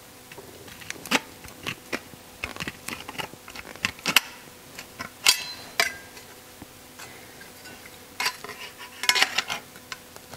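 Aviation tin snips cutting a painted sheet-steel engine air guide: irregular sharp metallic snips and clicks as the jaws bite, with the steel piece clattering as it is handled, busiest about four to six seconds in and again near the end.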